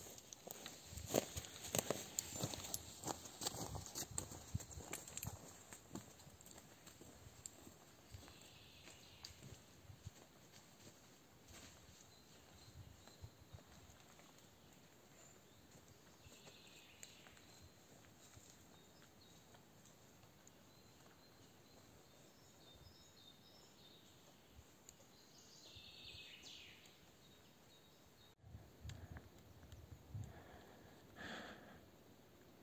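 Footsteps of a hiker walking over wet rocks and leaf litter, clear at first and fading within about six seconds as he walks away. After that it is nearly quiet, with a few faint high sounds.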